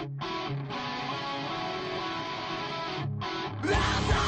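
A rock song's intro played on guitar, with two brief breaks in the playing. Near the end the music gets louder and fuller as more instruments come in.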